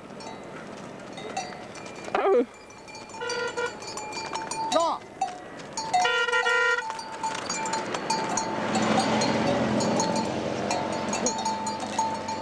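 A small herd of cattle walking on a paved road, with a bell clanking again and again. Two short, bright tones sound about 3 and 6 seconds in, and a broad noise swells over the last few seconds.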